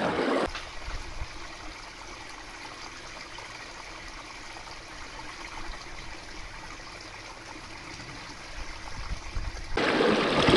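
Shallow stream running: a soft, steady wash of water, louder for a moment at the start and again just before the end.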